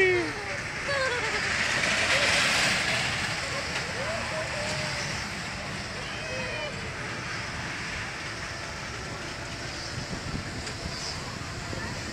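Outdoor fairground ambience: a steady rushing noise, louder for the first few seconds, with faint voices now and then.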